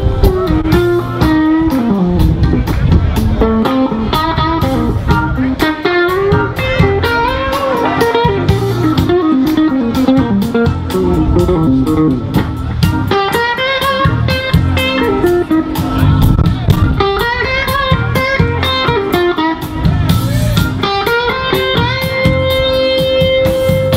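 Live electric blues band playing: a bending electric guitar lead line over bass and drums.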